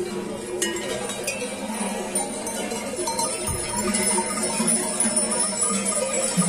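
Dozens of livestock bells (chocalhos) hung on a mixed flock of sheep and goats, clanking and jangling over one another as the flock walks.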